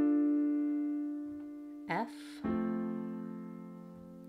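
Piano chords: a D minor triad (D-F-A) rings and slowly fades. About two and a half seconds in, an F major triad (F-A-C) is struck and rings on, fading.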